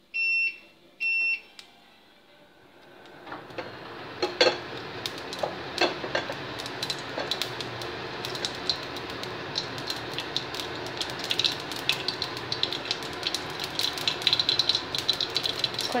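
Two short electronic beeps, then hot oil in a pan starts to sizzle from about three seconds in. Sharp crackling pops grow thicker toward the end as the mustard seeds in the oil begin to splutter.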